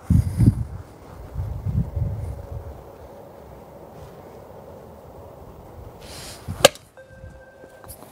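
Golf iron striking a ball off an artificial-turf hitting mat: one sharp crack about two-thirds of the way in, the ball struck from the middle of the clubface and hit hard. A low rumbling noise fills the first couple of seconds.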